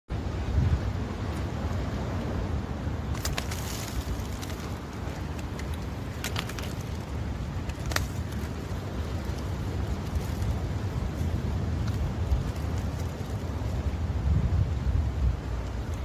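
Steady low rumble of wind buffeting the microphone, with a few sharp clicks about three, six and eight seconds in.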